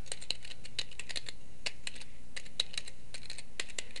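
Computer keyboard typing: a run of quick, irregular key clicks.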